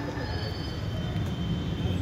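A steady high-pitched squeal, two thin tones held for over a second, over a continuous low rumble.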